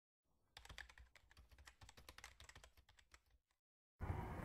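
Very faint computer keyboard typing: a quick, irregular run of key clicks that stops about half a second before the end, matching the title text being typed out letter by letter.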